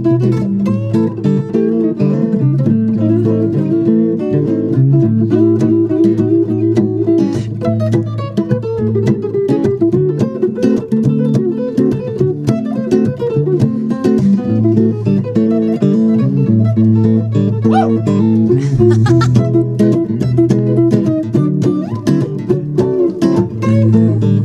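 Lead solo on a sunburst Epiphone hollow-body electric guitar: fast runs of picked blues notes over a second electric guitar playing the rhythm part.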